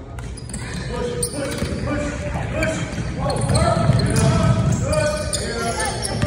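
Basketball bouncing on a hardwood gym floor during play, with players and spectators calling out, louder in the second half.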